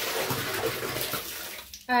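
Water streaming off a wet skein of freshly dyed yarn as it is lifted out of the dye pan, pouring back into the pan and tailing off near the end.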